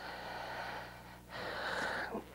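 A man breathing audibly into a close lectern microphone during a pause in speech: two long breaths, the second slightly louder, over a faint steady electrical hum.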